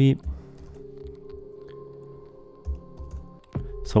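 Several computer keyboard keystrokes as a numeric value is typed into a field, over quiet background music holding a steady chord.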